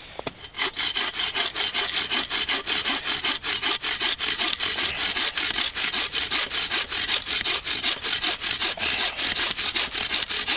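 Sawvivor folding bow saw cutting through a log with quick, even back-and-forth strokes, about four or five a second, starting about half a second in.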